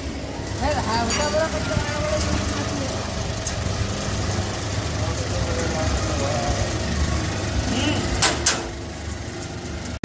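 Magnetic destoner grain-cleaning machine running with a steady low hum from its motor and belt drive, under indistinct voices. Two sharp knocks come near the end.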